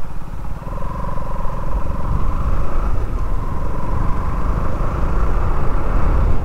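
Motorcycle engine running steadily while riding along a road, with wind rushing over the microphone. Faint steady tones sit above the low rumble.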